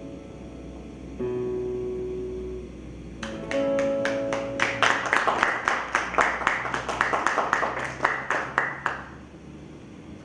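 Acoustic guitar: a few notes left ringing, then from about three seconds in a quick, even strumming that stops abruptly about nine seconds in.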